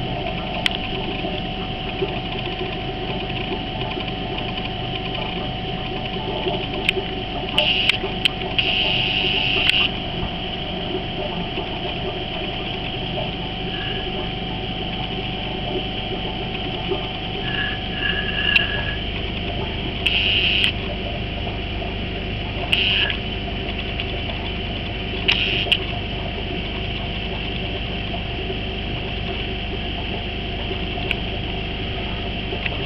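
Steady mechanical hum with a noisy wash, typical of an aquarium air pump driving a sponge filter. A few brief, higher-pitched hissing bursts come through it.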